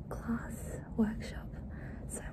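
A woman whispering close to the microphone, a few short, breathy fragments of hushed speech.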